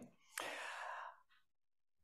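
A short intake of breath by a woman speaking close to a microphone, lasting under a second.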